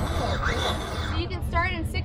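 Brammo Empulse electric motorcycle's motor whining in quick sweeps that rise in pitch during the first second, over a steady high tone. A voice is heard near the end.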